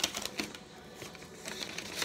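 Sheet of lined notebook paper being unfolded and handled: a few short, crisp paper rustles in the first half-second and again near the end.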